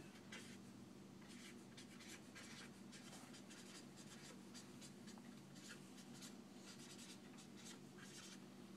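Faint short strokes of a marker writing and drawing on an easel whiteboard, repeated many times over a steady low hum.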